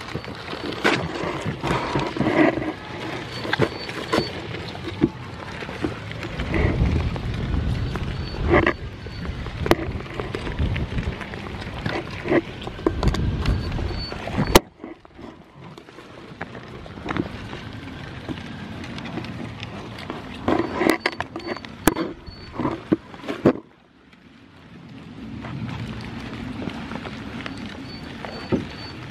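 Goats eating seeds off a wooden tabletop right at the microphone: a dense run of sharp clicks and knocks from lips and teeth on the seeds and boards, with snuffling breaths and low bumps. The sound drops away abruptly twice, about halfway and near the end, and builds again.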